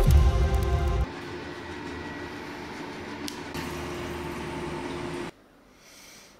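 Cinematic intro music and sound design: a heavy, deep bass hit in the first second, then a quieter sustained drone with a couple of sharp glitchy clicks. It cuts off suddenly a little after five seconds, leaving faint room tone.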